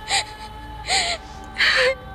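A woman giving three short, breathy gasping cries of distress, unevenly spaced, over a steady held note of background music.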